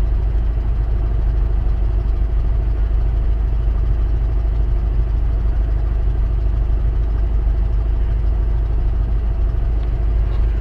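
Steady low rumble of a vehicle engine idling.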